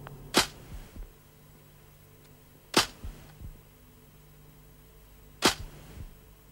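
Title-sequence sound effect: a sudden sharp crack about every two and a half seconds, three in all, each followed by one or two fainter echoing knocks, over a faint low steady hum.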